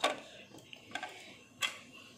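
A few light clicks of hard plastic, spaced out and irregular, as a plastic rubber-band loom and its pegs are handled.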